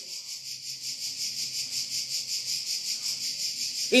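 Steady high-pitched background hiss with a fast, even pulsing, held through a pause in speech.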